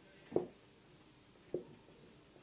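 Felt-tip marker writing on a whiteboard: two short strokes, one about a third of a second in and another about a second and a half in, with faint room tone between them.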